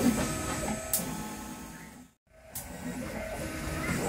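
Stepper motors of a large DIY 3D printer whining in steady tones that change pitch and stop and start as the print head makes its moves. The sound cuts out completely for a moment a little after two seconds in.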